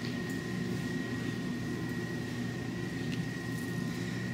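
Steady room noise: a low hum and hiss with a faint, constant high-pitched whine.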